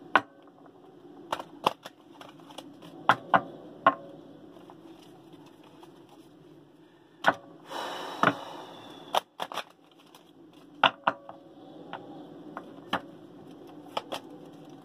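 A deck of tarot cards being shuffled by hand: scattered sharp snaps and clicks of the cards, with a short rustling riffle about eight seconds in.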